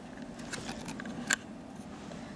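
Small clicks of a Bolex camera's ground glass holder being lifted up by finger: a few faint ticks, then one sharper click a little past halfway.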